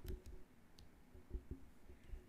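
A few faint computer mouse clicks and soft small knocks in a quiet room.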